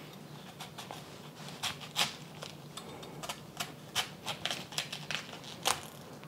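Santoku knife cutting the core out of half a head of cabbage on a wooden board: irregular crisp crunches and clicks, the sharpest about two seconds in, about four seconds in and just before the end.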